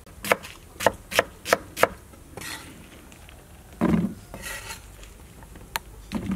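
A knife slicing pineapple on a wooden chopping board: about five quick cuts in the first two seconds, then a heavier thump about four seconds in and a short scrape.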